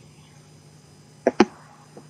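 A pause between speakers: a faint steady low hum, broken a little over a second in by one brief voice sound, a short murmur.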